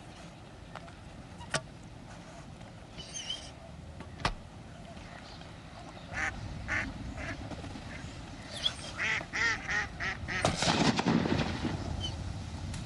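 Ducks quacking: a run of short calls in the second half that comes faster and louder, ending in a louder noisy flurry. Two sharp clicks sound before the calls begin.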